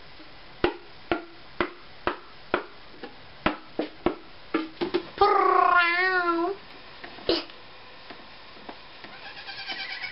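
A woman's voice gives a warbling, cat-like wail lasting about a second and a half, just after the middle. Before it come sharp clicks or taps about twice a second.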